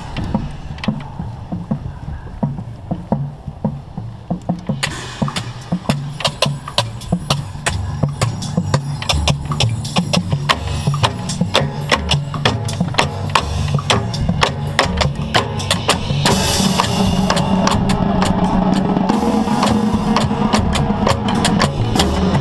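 Marching tenor drums (quints) played up close with sticks, along with the rest of a drumline. There are scattered hits over low drum notes for the first few seconds, then a steady run of strikes from about five seconds in, growing denser and louder from about sixteen seconds.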